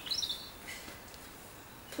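A bird chirps briefly near the start, high-pitched and faint, over a low, steady outdoor background hiss.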